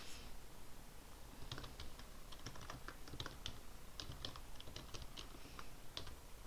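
Typing on a computer keyboard: an irregular run of light key clicks starting about a second and a half in.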